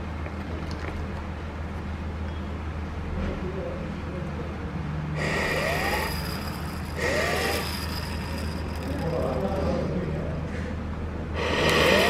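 Short rushing bursts of flow through a PVC pipe and its water flow sensor, three times (about five seconds in, about seven seconds in and near the end), over a steady low hum.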